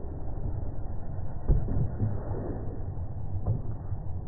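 Slowed-down court sound: a low, muffled rumble with a dull thud about a second and a half in and another near the end.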